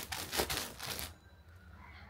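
Clear plastic bags around folded blankets crinkling and rustling as a hand presses and straightens the stack, stopping about halfway through.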